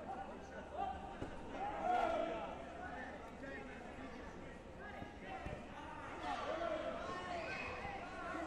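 Indistinct voices of several people in a large sports hall, with a couple of short dull thuds.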